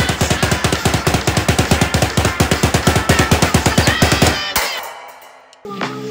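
A rapid, even drum roll, the suspense roll before a countdown's number-one reveal, then fades away. Near the end, a piece of music starts with low bass notes.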